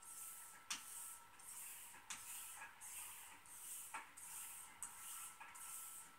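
A Henckels straight razor being stropped on an unpasted hanging strop: faint, even swishes of the blade along the strop, about two a second, with an occasional light click as the razor is turned over. This is the edge being finished after honing, with no abrasive paste on the strop.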